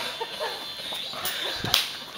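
A short, sharp swish or snap near the end, typical of a handheld camera being swung round and handled, over faint distant voices.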